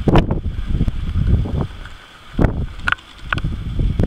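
Wind buffeting the camera microphone in uneven gusts, with a few short sharp clicks and knocks from the camera being handled.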